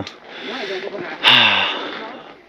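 A man breathing close to the microphone: a softer breath in, then a heavy breathy exhale like a sigh, with a brief voiced start, a little past the middle.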